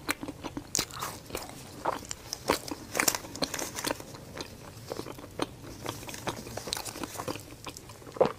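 Close-mic chewing of a soft chocolate-filled mochi whose filling holds crisp chocolate pearls, heard as scattered, irregular sharp mouth clicks and small crunches.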